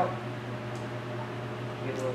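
Steady low hum of machinery or ventilation in a small room, with a faint brief swish from a plastic squeegee pushing water out from under wet paint protection film about midway.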